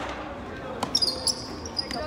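A basketball bouncing a few times on a hardwood gym floor during a free throw, with short high sneaker squeaks on the court in the second half.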